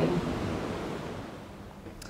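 Room tone in a pause between sentences of a talk. A woman's speech through a microphone cuts off just after the start, then an even hiss fills the room and slowly fades.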